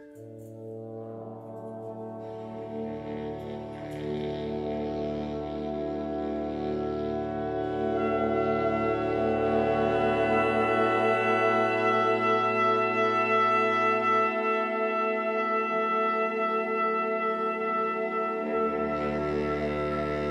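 Big band horn section holding long, sustained chords that swell louder over the first several seconds as new voices enter in layers. The lowest notes drop out about two-thirds of the way through and come back near the end.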